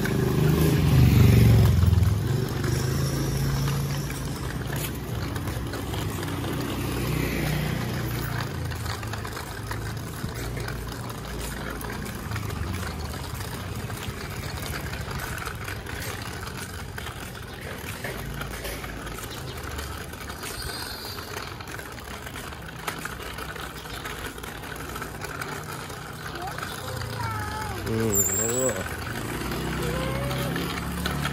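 Motor traffic on a street, a steady low rumble that swells loudest as a vehicle passes in the first few seconds.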